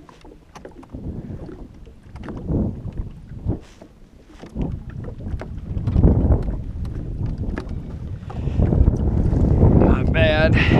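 Wind buffeting the microphone in uneven gusts, growing louder in the second half, with a few faint clicks.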